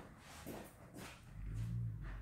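Faint small knocks and rustling from someone rummaging for a tape measure out of shot; a low steady hum comes in about one and a half seconds in and becomes the loudest sound.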